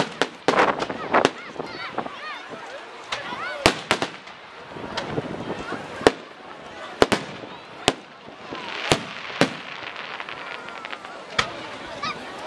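Aerial firework shells bursting overhead: about a dozen sharp bangs at irregular intervals, several close together around the first second and again in the middle, with crackling between them.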